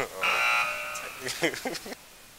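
Game-show style buzzer sound effect, a steady harsh tone lasting about a second, marking a wrong answer in a quiz.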